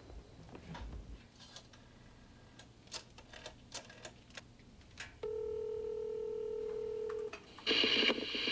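A wall-mounted rotary telephone being dialled, with scattered clicks from the dial and handset. About five seconds in, a steady ringback tone lasting about two seconds sounds on the line as the call rings through, and it stops just before a voice answers.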